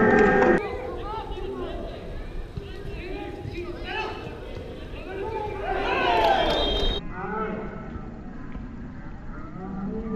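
Footballers shouting across a pitch during play, with long drawn-out calls. The loudest shouts come at the very start and around six seconds in, and the sound changes abruptly at about half a second and again at seven seconds.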